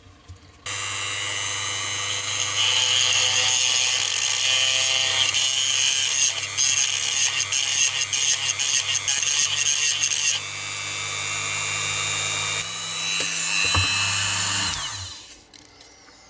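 Handheld rotary tool switched on about a second in, its motor running at a steady high speed while a small bit sands the metal axle of a diecast model's wheel assembly. The grinding gets louder and softer as the bit is pressed on and eased off, and the motor spins down near the end.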